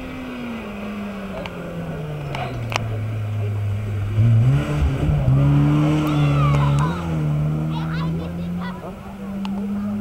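BMW E30 3 Series rally car's engine. The revs fall as it comes down the lane, then it comes back on the throttle and is loudest as it passes close by, about four to seven seconds in, with the pitch stepping up and down through gear changes. The revs rise once more near the end as it drives away.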